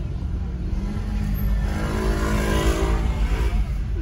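A motor scooter's small engine passing close alongside, swelling to its loudest about two and a half seconds in and then easing off, over the steady low road rumble inside a moving car.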